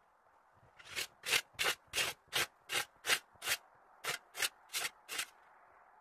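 Footsteps crunching on packed snow, about a dozen quick steps in a steady rhythm with a brief pause in the middle.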